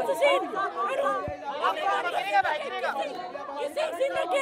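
Several people talking at once in a tightly packed crowd: a woman's voice among overlapping chatter from the people pressed around her.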